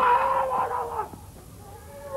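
A performer's long, howl-like vocal cry, held on one high pitch for about a second and dropping off at the end.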